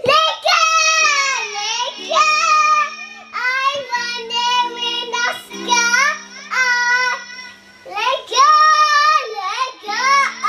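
A young girl singing loudly into a microphone in high, wavering phrases with short breaks between them.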